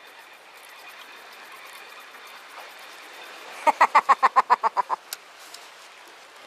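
A man laughing in a quick run of about ten short 'ha's, starting a little past halfway and lasting just over a second, with a single click right after. Before the laugh there is only a low background with faint ticking.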